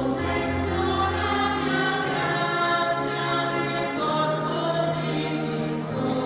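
Choir singing a hymn in long held notes, with a low sustained accompaniment beneath.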